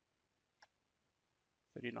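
A single faint click of a computer keyboard key about half a second in, otherwise near silence; a man starts speaking near the end.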